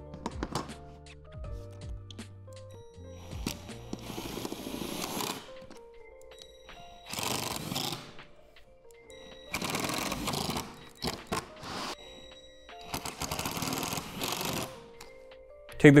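Ridgid cordless impact driver driving screws into a metal wall support on a plastic shed wall panel, in about four short hammering bursts a couple of seconds apart. Background music plays underneath.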